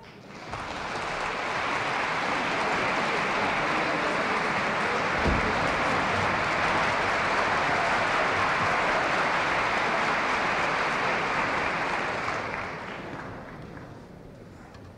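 Concert audience applauding after the orchestra stops playing: the clapping builds over the first couple of seconds, holds steady, and dies away about twelve seconds in. A single low thud comes about five seconds in.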